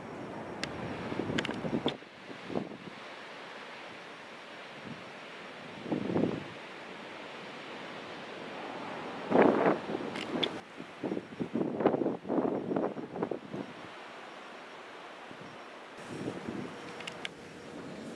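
Wind blowing across the microphone outdoors: a steady rushing hiss with several louder, irregular gusts.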